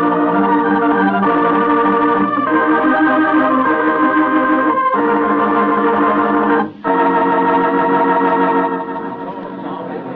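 Organ scene-change bridge music: held chords shifting every second or two, broken twice briefly, then dropping in level near the end.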